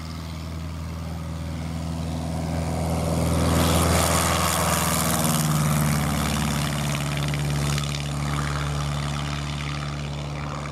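Single-engine light aircraft's piston engine and propeller at full power on a takeoff run, growing louder as it nears, loudest about four seconds in, then fading as it climbs away.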